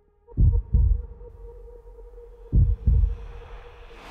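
Heartbeat-like sound effect of deep bass thumps in two double beats about two seconds apart, over a steady low drone, with a faint hiss swelling toward the end.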